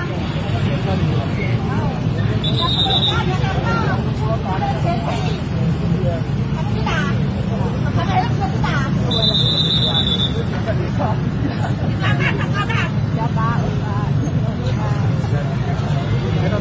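Street traffic with car and motorbike engines running, under overlapping raised voices of people arguing. Two short high steady tones sound, one about three seconds in and a longer one about nine seconds in.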